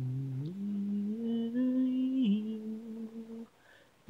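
A single voice humming a slow melody a cappella, holding each note and stepping up and down in pitch. It breaks off about three and a half seconds in.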